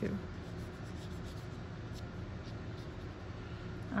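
Felt-tip marker rubbing and scratching on paper in short strokes as an area is coloured in.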